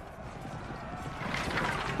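Subdued film battle-scene soundtrack: a low, rough mix of battle noise that swells slightly in the second half.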